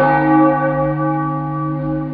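A large bell struck once, ringing with a slow fade.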